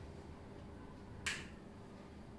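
A single sharp click about a second in, from a whiteboard marker's cap being snapped on or off, against quiet room tone.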